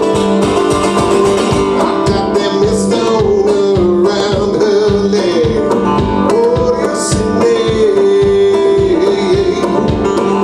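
Live music from a resonator guitar and an upright double bass, playing a steady, evenly pulsed beat under a wavering melody line.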